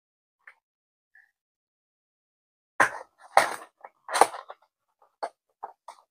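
Cardboard trading-card booster box being handled as its lid is popped up into a display: a cluster of short scrapes and rustles of card about three seconds in, then a few light taps.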